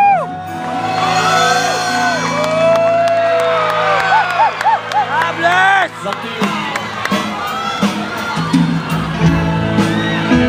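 A live rock band with electric guitars, drums and a singer, loud and close, with a crowd cheering and whooping over the music.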